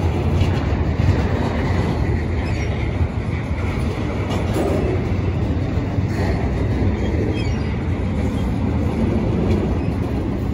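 Double-stack intermodal well cars of a freight train rolling past at close range: a steady heavy rumble of steel wheels on the rails, with a faint high wheel squeal coming and going.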